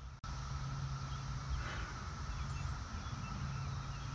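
Outdoor background ambience: a steady low rumble with a faint hum, and a few faint bird chirps.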